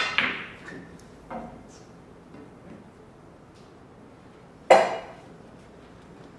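Sharp clacks of pool balls striking each other: a loud clack with a short ringing tail at the start, lighter knocks just after and about a second in, and a second loud clack near the end.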